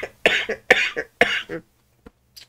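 A man coughing into his fist: about four quick, harsh coughs in a row, ending about a second and a half in.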